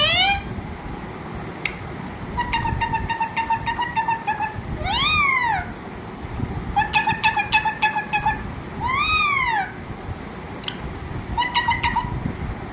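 Pet parakeet calling: a short rising squawk at the start, then two bouts of fast repeated chattering notes, each followed by one long call that rises and falls, with another short chattering run near the end.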